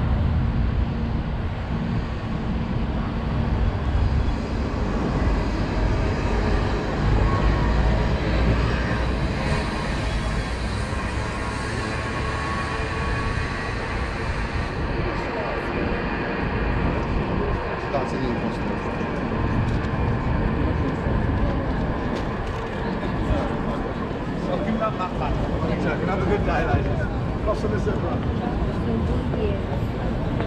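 Busy street ambience: road traffic running past, heaviest in the first half, under the chatter of many people talking nearby.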